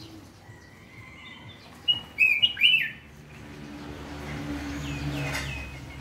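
A caged cang jambul, a crested songbird, calls a short, loud phrase of quick whistled notes about two seconds in. Fainter notes come before and after it. A low hum builds in the background during the second half.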